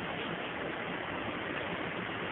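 Steady, even hiss of the recording's background noise, with no speech.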